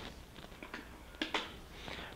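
Faint room tone with a few short clicks about a second in, from the powered arm-support device being handled and operated.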